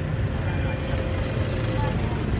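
Busy open-air market ambience: a steady low rumble with faint voices of people nearby.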